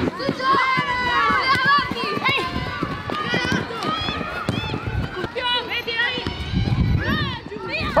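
Short, high-pitched shouted calls from players and the sideline during a women's soccer match, over the sound of players running on the pitch.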